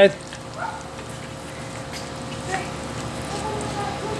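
Steak frying in melted butter in a cast-iron skillet over charcoal: a steady sizzle.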